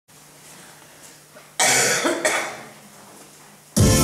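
A loud cough in two bursts about a second and a half in, then an electronic keyboard starts playing just before the end.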